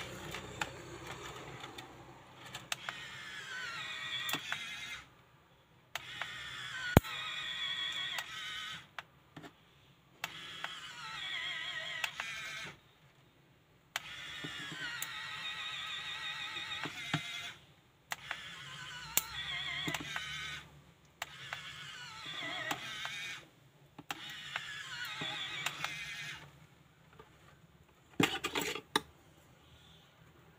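3D printing pen's filament-feed motor whirring in runs of a few seconds, stopping and starting about seven times, its whine sliding in pitch as it pushes filament out. A few sharp clicks come between runs, with a quick cluster of clicks near the end.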